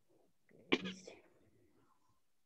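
A person's single short, sharp sneeze-like burst of breath, about three-quarters of a second in.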